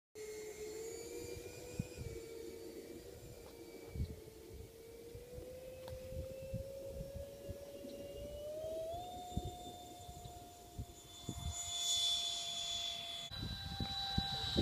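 Electric ducted-fan motor of an E-flite FJ-2 Fury RC jet whining through its takeoff run. The pitch rises slowly, steps up about nine seconds in as the throttle is opened, and a rushing sound builds near the end as the jet climbs away.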